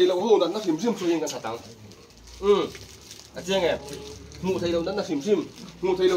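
Speech only: a man talking in bursts with short pauses.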